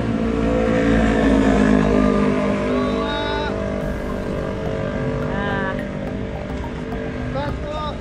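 A motor vehicle engine runs steadily throughout, a constant low drone with a few short bits of voice over it.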